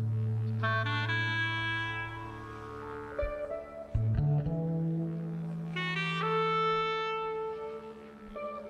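Clarinet playing two long phrases of held notes over a low sustained bass note that steps up in pitch about halfway through.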